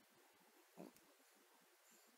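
Sleeping pug giving one short, noisy breath through its nose a little under a second in; otherwise near silence.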